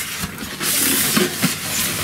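Polystyrene packaging foam rubbing and scraping as it is slid off a boxed machine: a hissing, scratchy rush that starts about half a second in and lasts over a second.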